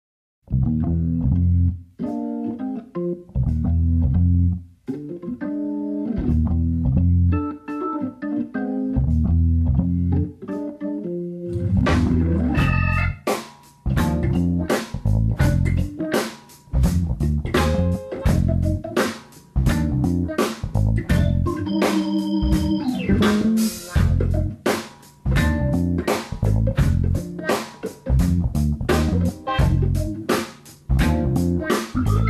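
Instrumental funk led by Hammond organ over bass guitar, opening with short stop-start riffs; about twelve seconds in the full band comes in with a steady beat.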